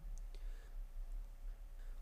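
A few faint clicks over a low steady hum.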